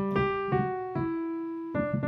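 Piano played one note at a time in a slow right-hand melody: three notes struck in turn, each left to ring and fade before the next.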